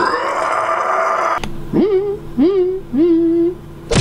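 A loud, dense buzzing blend of sound, cut off by a sharp click about a second and a half in. Then a voice hums three short notes, each sliding up into its pitch and holding briefly.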